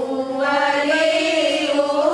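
A group of women chanting together in unison: a slow devotional chant with long held notes that glide gently up and down in pitch, the chant of an aqiqah (akikah) gathering.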